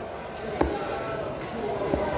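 A heavy fish-cutting cleaver chops through grouper flesh onto a thick cutting block. There is one sharp chop about half a second in and another at the very end.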